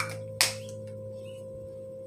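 Two short sprays from a fine fragrance body mist pump bottle, one right at the start and a louder one just under half a second later. A steady faint tone and low hum run underneath.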